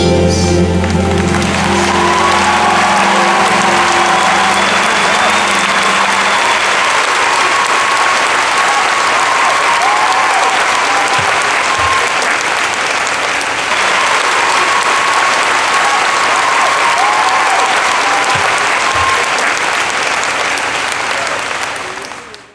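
Large audience applauding after a live ballad ends; the last held chord of the song fades out over the first few seconds.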